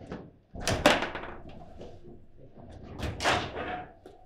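Foosball table in hard play: a sharp, loud bang about a second in and a second bang about two and a half seconds later, each ringing briefly through the table. Lighter clicks of the ball, rods and figures run between them.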